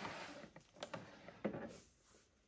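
Faint handling sounds of a clear plastic storage bin being slid out of a shelf cubby: a soft scrape, then a couple of light knocks.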